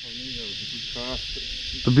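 Steady high-pitched drone of insects calling from the vegetation, an even hiss-like chorus with no breaks, under faint talk.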